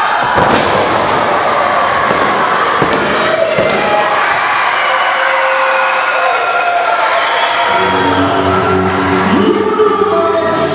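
A wrestler slammed down onto the ring mat about half a second in, a single heavy thud, followed by crowd noise and shouting. Music starts near the end, over the pinfall.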